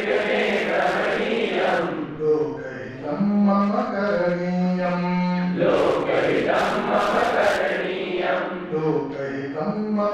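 A man chanting a Sanskrit verse in a slow melody, holding long notes of a second or two each on a steady pitch.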